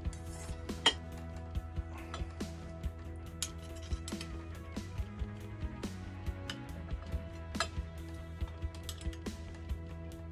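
Light metallic clicks and clinks of a hex key and bolts against a disc-brake caliper adapter as it is loosely fitted to a fork leg. This plays over steady background music.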